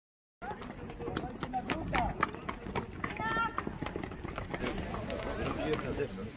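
Outdoor sound of a group of saddled horses standing and shifting, with scattered clicks and thuds of hooves and tack and people talking around them; it starts abruptly about half a second in. A brief high call stands out about three seconds in.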